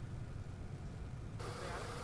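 Faint low hum, then about one and a half seconds in, a faint outdoor background of steady vehicle engine noise comes in.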